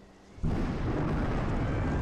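Deep, steady rumbling sound effect of an earthquake, starting about half a second in.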